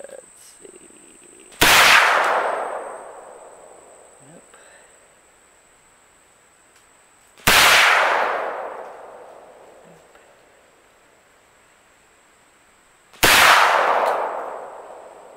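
Three shots from an Auto Ordnance M1 Carbine in .30 Carbine, about six seconds apart. Each is a sharp crack followed by a long echo dying away over a couple of seconds.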